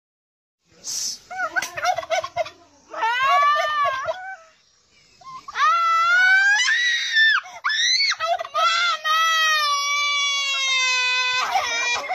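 A boy screaming and wailing in fright at a turkey. The cries begin about a second in as short quavering bouts, then become long, high-pitched drawn-out wails, the last held for several seconds and sinking slowly in pitch.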